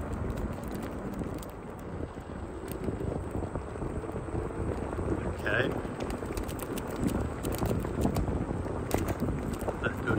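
Wind rushing over the microphone with a low rumble from a Ninebot self-balancing scooter's wheels rolling steadily over rough, cracked asphalt.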